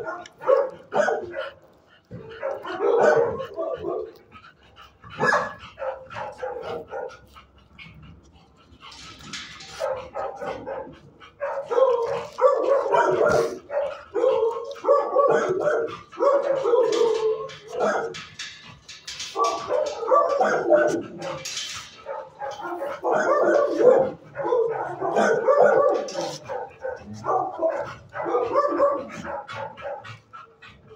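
A four-month-old puppy barking and yipping in repeated bursts, with short pauses of a second or two between runs.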